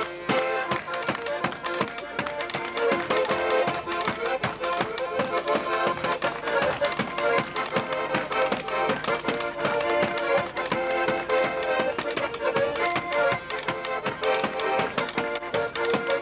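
Polish folk band playing an instrumental tune: accordion chords over a steady beat of drum strikes, with upright bass.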